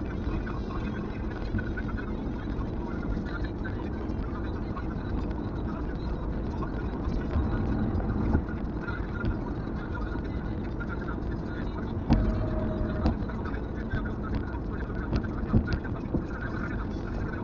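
Steady road and tyre noise inside a Kia Carens cabin at highway speed, picked up by a dash-mounted camera. About twelve seconds in comes a knock, then a short steady tone that lasts about a second.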